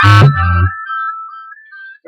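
A hip-hop beat playing back, its drum hits over deep bass, stops about half a second in, leaving a high synth melody note that fades away.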